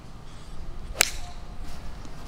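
A golf club striking the ball off the tee: one sharp crack of impact about halfway through a tee shot.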